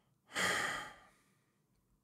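A person's sigh: one breath let out, starting sharply and fading away within about a second.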